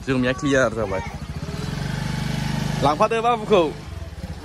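Small motor scooter engine running under voices, its hum growing louder in the middle as the scooter rides on, then dropping away near the end as it slows to a stop.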